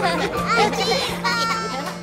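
High-pitched cartoon children's voices calling out over bright children's music with a steady low bass note; the sound fades a little near the end.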